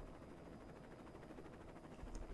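Near silence: faint room tone with a low, steady hiss.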